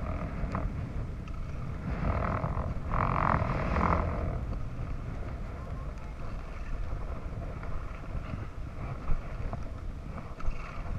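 Wind buffeting the microphone of a body-worn camera on a skier moving downhill, with the hiss of skis sliding on snow, louder for a couple of seconds early in the middle. A single sharp knock near the end.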